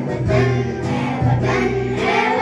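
A group of children sing a Hindi patriotic song together with a man's voice, accompanied by a Yamaha electronic keyboard.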